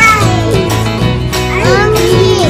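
Background music with a steady beat and a sung vocal line that slides up and down between notes.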